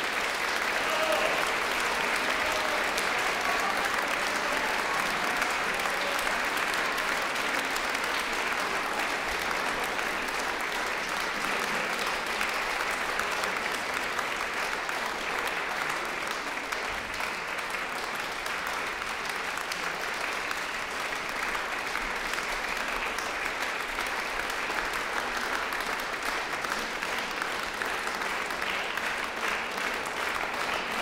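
Concert hall audience applauding, breaking out at once and holding steady.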